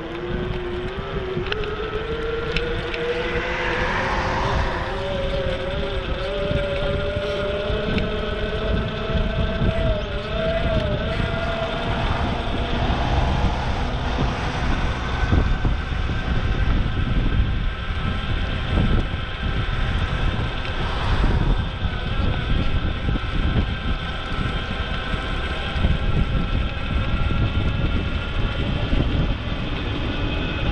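Wind rumbling on a bike-mounted action camera's microphone while riding. Over it, a whine from the bike rises in pitch over the first ten seconds or so as it picks up speed, then holds steady.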